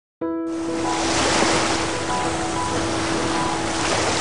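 Ocean surf washing steadily, starting abruptly just after the start, with soft background music holding long steady notes over it.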